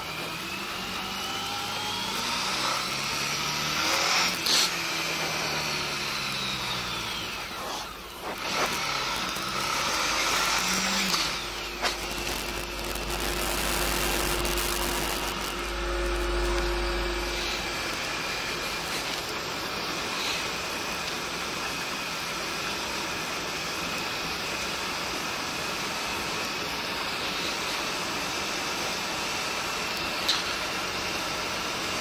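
Honda ST1300 Pan European's V4 engine pulling away and accelerating, its pitch sweeping up through the gears in the first ten seconds or so, then settling into a steady cruise. Wind rushes over the helmet-mounted microphone, with a louder gust of rumbling wind noise about halfway through.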